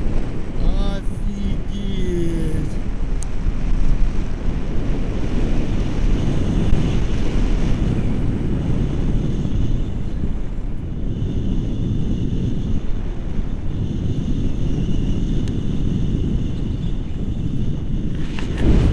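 Wind rushing over an action camera's microphone in tandem paraglider flight: a loud, steady, low buffeting. There is a short vocal sound in the first couple of seconds.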